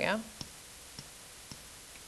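Three light clicks about half a second apart, from a pen or mouse selecting tools in interactive-whiteboard software.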